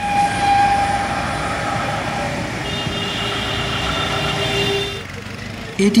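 Busy street traffic noise from engines and tyres, with a vehicle horn sounding steadily for about two seconds around the middle.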